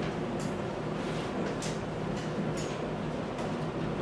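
Steady room noise with faint rustling from a seated audience, and a few light clicks.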